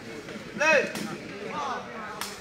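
A short shouted call from a person at a sepak takraw match, rising then falling in pitch, with a single sharp knock about a second in and a fainter voice after it.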